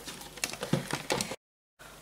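A spoon stirring a thick mix of PVA glue and shaving foam in a plastic tub: a few soft, irregular squelches and clicks, then the sound drops out completely for a moment about a second and a half in.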